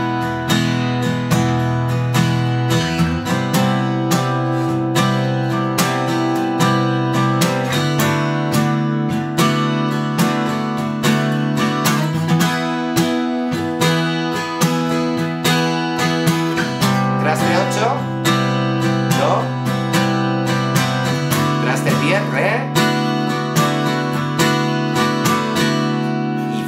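Taylor acoustic guitar strummed in a steady rhythmic pattern, moving through E, C and D chords played with one movable barre shape, C at the 8th fret and D at the 10th. The chord changes every four to five seconds, with a few string slides heard late in the passage.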